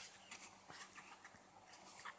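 Near silence broken by a few faint, short clicks and soft taps as a cat mouths and drops a small piece of raw steak on a tiled floor.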